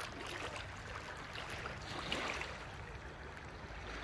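Faint waterside ambience: calm bay water lapping at the edge of a stone boat ramp.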